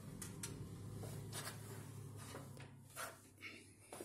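A faint low hum that fades out about two and a half seconds in, with several light clicks and knocks scattered through it.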